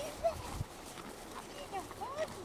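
German shepherd puppy whining and yipping in short, high, rising-and-falling calls as it plays, with a few soft footfalls on snow in the first half-second.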